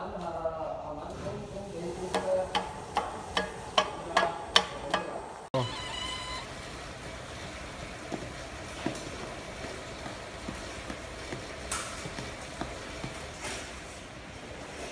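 Product paging machines on a belt conveyor. First comes an irregular series of sharp clicks and knocks as cartons are fed and dropped one at a time. After an abrupt cut about five seconds in, a steadier running noise with occasional light ticks follows as a friction feeder pages plastic bags onto the belt.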